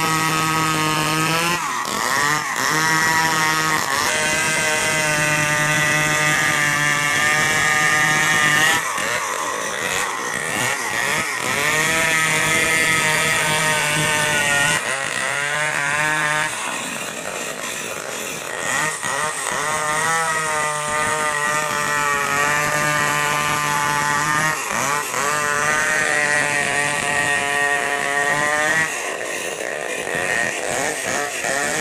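Stihl 070 two-stroke chainsaw cutting lengthwise through a large log at full throttle, its engine pitch dipping under load and recovering several times through the cut.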